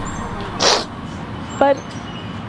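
A crying woman's single sharp, short sniff through the nose, about half a second in.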